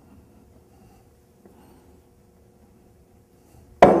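Faint handling of metal parts, then near the end a sharp metallic knock that rings on and fades, as the poppet and seal assembly is pushed free of the waterjet bleed-down valve body with an extraction tool.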